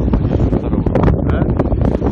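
Wind buffeting a mobile phone's microphone: a loud, rough rumble with crackling gusts.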